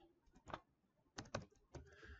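A few faint computer keyboard keystrokes: a single click, then a quick run of three, then one more.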